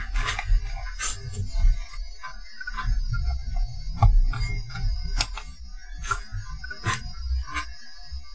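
Background music, with a series of light clicks and taps as a capacitor is clamped into the lever socket of a handheld component tester for measuring.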